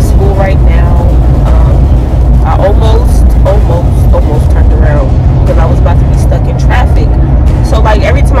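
Steady low drone of a car heard from inside the cabin while driving, under a woman's voice talking intermittently.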